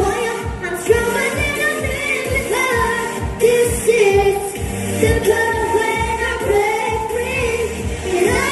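Girls singing a pop song into handheld microphones over a backing track with a steady drum beat.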